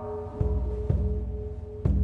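Intro music for a channel logo: three deep drum hits, about half a second apart and then once more near the end, over a held ringing tone.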